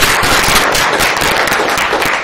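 Audience applauding: loud, dense, steady clapping.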